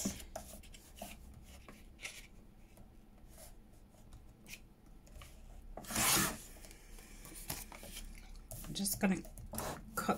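Paper being handled and slid about on a table with small clicks and rustles, and one short, louder cut of a paper trimmer's blade through the paper about six seconds in.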